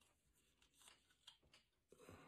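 Near silence, with a few faint soft clicks and rustles from a plastic action figure being handled.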